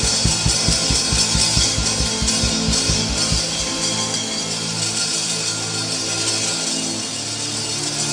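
Live church band music: a steady drum beat with guitar that drops out about halfway through, leaving low held chords.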